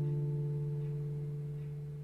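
Last chord of the closing guitar music ringing out, a low sustained chord fading away steadily.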